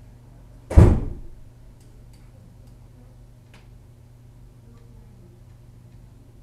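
A single loud thump less than a second in, dying away quickly, followed by a few faint light clicks over low room hum.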